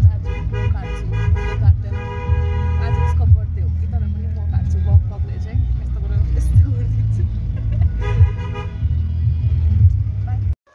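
Road and engine rumble inside a moving vehicle's cabin, with a car horn sounding over it: a run of short toots near the start, one longer blast about two seconds in, and another run of toots near the end.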